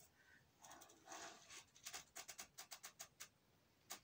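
Faint handling of a gold-tone necklace: soft rustles, then a quick run of small clicks as the chain and heart charms clink together.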